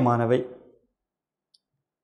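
A man's lecturing voice in Tamil, finishing a word in the first half second, then dead silence with one faint click about one and a half seconds in.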